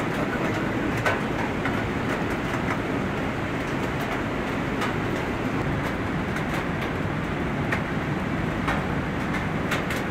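A steady, even rushing noise with scattered faint clicks.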